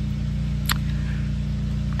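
A steady low mechanical hum from a running motor or engine, unchanging throughout, with a single sharp click a little under a second in.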